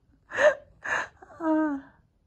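A woman gasping with laughter: two sharp breathy gasps, then a short wavering voiced sound.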